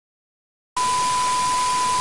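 Television static sound effect: loud, steady white-noise hiss with a steady high beep on top, starting suddenly about three-quarters of a second in after silence.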